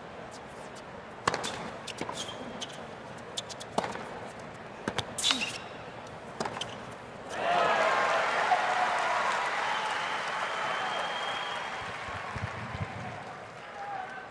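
A tennis ball is struck by rackets and bounces on a hard court in a short rally, a few sharp hits. About seven seconds in, a stadium crowd breaks into applause and cheering as the point ends, loudest at first and then slowly dying down.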